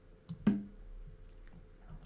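Faint computer mouse clicks and one louder short knock about half a second in: the online chess program's move sound as the queen recaptures on e4.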